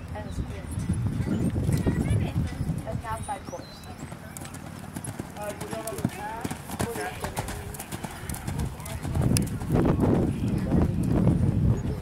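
Horse cantering on sand footing, its hooves thudding in a steady rhythm, loudest over the last few seconds as it passes close.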